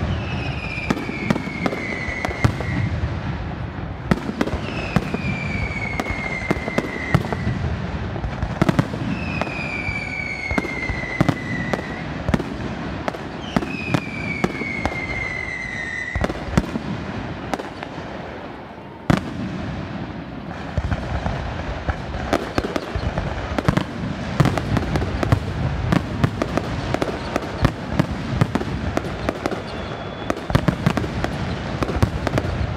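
Fireworks finale: a dense, continuous run of aerial shell bangs and crackling. In the first half, four whistling fireworks each give a falling whistle lasting about two seconds. There is a brief dip about two-thirds of the way in, ended by a single sharp bang.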